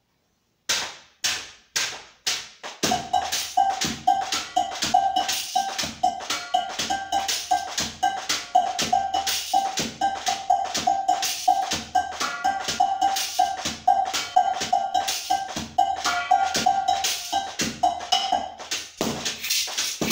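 Percussive music: a few single sharp hits about a second in, then from about three seconds a fast, dense rhythm of taps and clicks with a repeated mid-pitched note pulsing over it, thinning out near the end.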